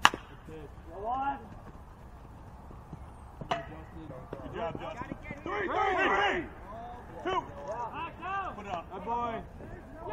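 Sharp crack of a metal baseball bat hitting a pitched ball, followed a few seconds later by players and coaches shouting and calling out across the field.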